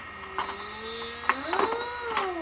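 Electronic toy barn playing a cow's moo: one long call that rises in pitch past halfway and then starts to fall, as a plastic egg is pushed into the toy cow's mouth. A few sharp plastic clicks sound over it.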